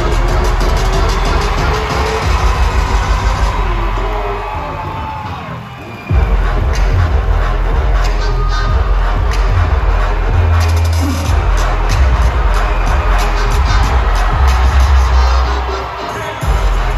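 Loud live concert music over the arena sound system with heavy bass, the crowd cheering over it. A fast pulsing rhythm fades away over a couple of seconds, then the music comes back abruptly with a heavy bass hit about six seconds in and carries on.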